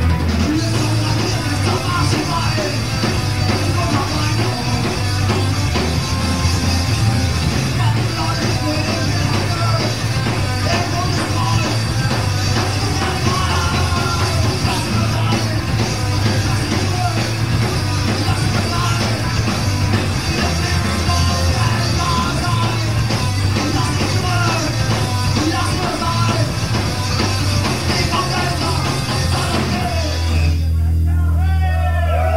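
Punk rock band playing live: distorted guitar, bass and drums at full volume, with a singer's vocals over them.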